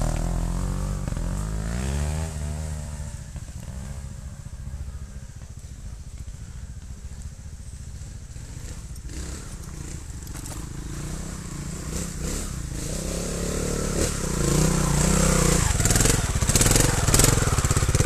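Trials motorcycle engines on a steep dirt climb. One bike revs about two seconds in and fades as it moves away. Another then approaches and grows louder, with throttle blips and clatter from the tyres and ground over the last few seconds.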